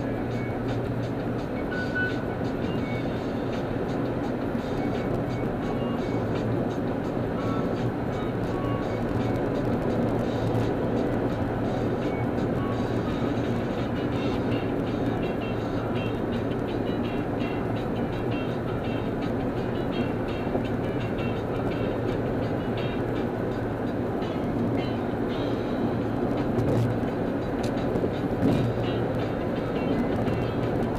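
Steady road and engine noise inside a moving car at freeway speed, with music playing along with it.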